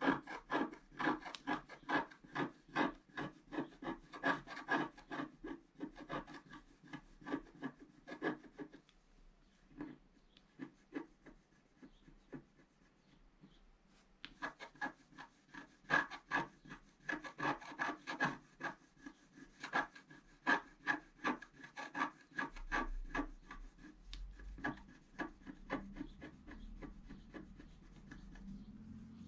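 Wooden scratch stick scraping the black coating off scratch-art paper in quick short strokes. The scratching stops for several seconds in the middle, then starts again and turns fainter near the end.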